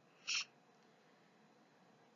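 Near silence in a pause of the speech, with one short, faint breath about a third of a second in.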